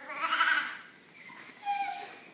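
A dog whining: one longer cry near the start, then two short, high cries in the second half.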